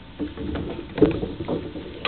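Several light wooden knocks and clunks at irregular intervals, from tools and wood being handled on a woodworking bench.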